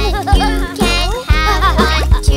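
A children's song: a voice singing the line 'and you can have one too' over a bright backing track with a bass beat about twice a second.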